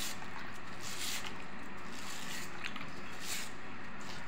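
Brush scrubbing a hedgehog's wet spines in soapy sink water, in repeated short strokes about once a second.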